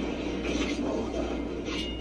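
Mechanical whirring sound effect from an animated show's soundtrack as a character's backpack unfolds into a fan of sword blades; a steady, noisy spread of sound with no distinct strikes.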